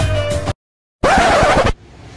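Background music with a steady beat cuts off suddenly about half a second in; after a brief dead silence, a loud record-scratch sound effect lasts under a second.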